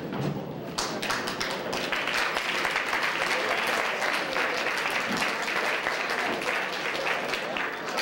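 A roomful of people applauding, the clapping starting suddenly about a second in and going on steadily, over crowd chatter.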